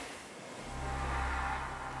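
A low, steady hum that fades in about half a second in and holds, with a faint hiss above it.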